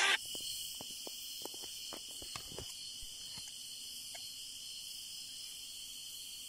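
Steady, high-pitched chirring of crickets, with faint light clicks and taps of hand tools scattered through the first half.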